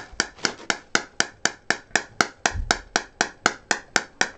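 Vetron 300 shockwave therapy unit's handpiece firing pulses: sharp clicks at an even rate of about four a second.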